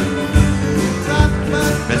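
Live band music: guitars and keyboard playing a slow song in a gap between sung lines, with the singer coming back in at the very end.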